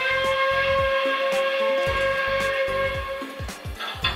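A steam-locomotive whistle blowing one long steady blast that slides up slightly as it starts and stops a little before the end, over music with a steady low beat.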